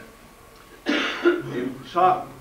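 A man's voice: a short pause, then a throat-clear about a second in, and his speech picks up again near the end.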